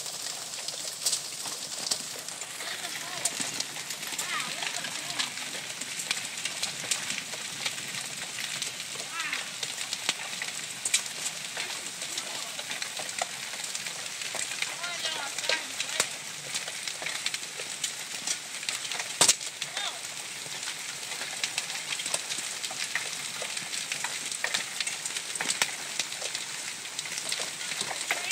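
Golf-ball-sized hail and rain falling steadily on a lawn and concrete walkway: a dense crackling hiss with many scattered sharp clicks of hailstones striking, and one louder crack about nineteen seconds in.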